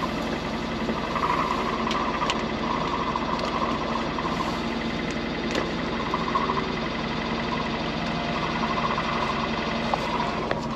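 A steady mechanical hum of the tractor and planter running nearby, with a wavering higher whine over it. A few sharp clicks come about two seconds in and again past the middle, as the seed tube on the planter row unit is handled.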